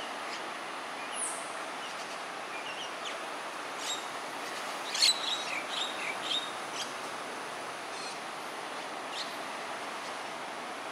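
Short bird chirps and calls over a steady background hiss, the loudest and busiest run of calls about five to six and a half seconds in.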